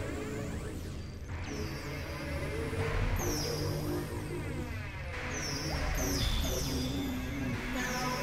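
Experimental electronic synthesizer music: layered low drones and shifting held tones, with high falling sweeps that recur through it.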